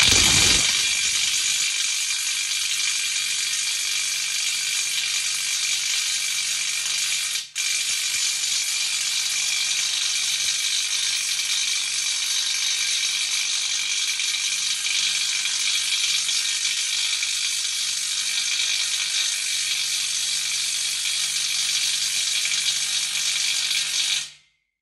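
Makita 18V cordless impact wrench hammering continuously in reverse against a bolt tightened to 700 N·m that it fails to break loose. It gives a steady, rapid rattle of impacts with one brief break about seven and a half seconds in, and it cuts off at the very end.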